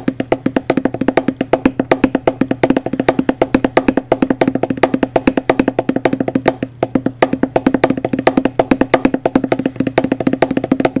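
Fingertips drumming fast on a tabletop: a dense, unbroken run of sharp wooden-sounding taps with uneven louder accents, played as a rhythmic finger-drumming pattern.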